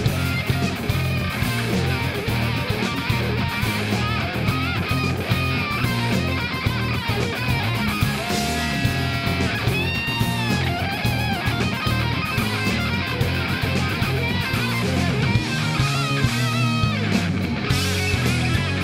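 Live hard-rock band playing an instrumental passage: a lead electric guitar plays a solo of bent, sliding notes over drums, bass and rhythm guitar, holding one long bent note about ten seconds in.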